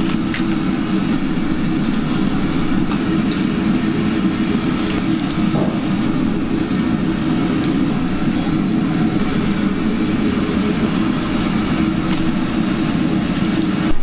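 Steady roar of a commercial kitchen's gas wok range and exhaust hood running, a constant low rush with a few faint clinks of utensils.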